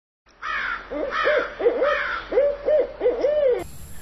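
Owl hooting: a run of about ten short, arched hoots, several in quick pairs, that cuts off suddenly near the end.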